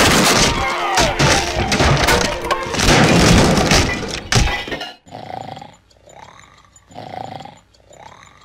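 Cartoon crash sound effects: a long run of crashing, breaking and thudding over orchestral music as a pyramid of elephants topples, cutting off about five seconds in. Quieter separate sounds follow, about once a second.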